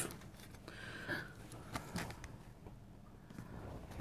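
Faint handling noise from a folded metal Hexi (hexamine) stove: a few light clicks and a brief scrape as it is turned over in the hands.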